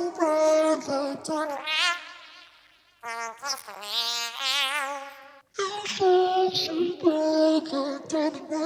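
A sung vocal played back through Logic Pro's stock Vocal Transformer pitch-and-formant plugin, heard in short phrases with wide vibrato. The phrases break off in brief pauses about two and a half and five and a half seconds in.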